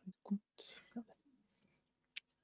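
Faint, indistinct murmured speech: a few short voice sounds and a breathy hiss about half a second in.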